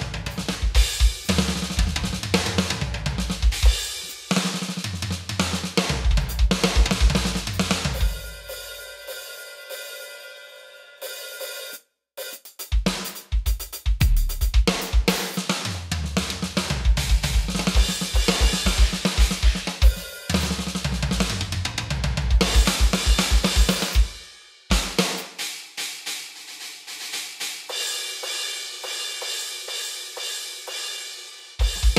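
Roland TD-25 V-Drums electronic kit played hard through its module: a rock groove with rapid kick-drum strokes, snare, hi-hat and crashes, played to check the kit's mix of levels. About eight seconds in the drums stop and a cymbal rings out and fades before the groove comes back. Near the end the playing turns lighter, with mostly cymbals.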